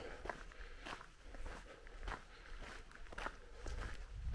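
Footsteps of a person walking on a gravel path, about two steps a second.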